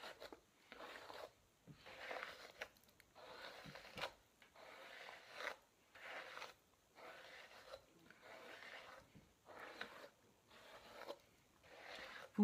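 Faint, repeated strokes of a hairbrush through long loose hair, roughly one soft brushing stroke a second.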